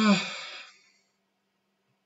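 A man's short voiced sigh, its pitch rising then falling, fading out within the first second.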